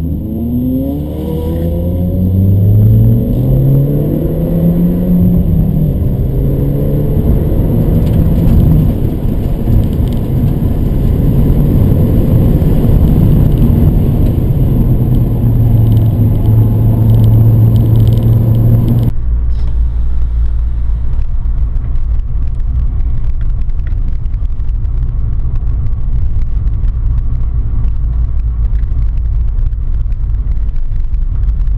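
In-cabin sound of a VW Polo accelerating hard on track, its engine note rising in pitch through a couple of gears and then holding a steadier drone. About two-thirds of the way in the sound changes abruptly to a steady low rumble of engine and road noise at an easy cruise.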